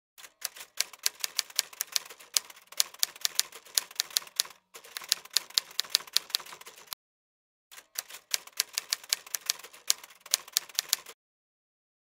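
Typing sound effect: a rapid, uneven run of sharp keystroke clacks. It breaks off for under a second about seven seconds in, then a second run stops about a second before the end.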